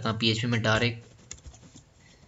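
Typing on a computer keyboard: a short run of quick keystrokes starting about a second in, after a brief spoken phrase.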